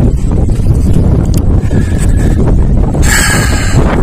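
Strong wind buffeting the microphone as a loud, steady low rumble, with a brief burst of hiss about three seconds in.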